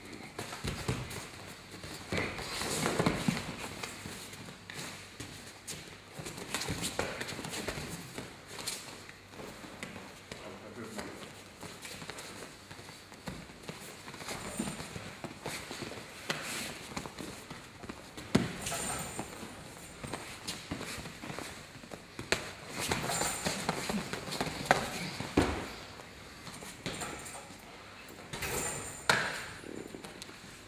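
MMA sparring on a training mat: irregular thuds, scuffs and footsteps of fighters moving and striking, with a few sharper impacts later on.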